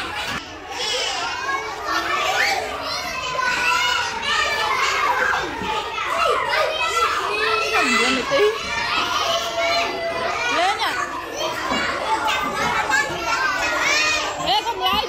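Many young children talking, calling out and squealing excitedly over one another, a steady classroom hubbub.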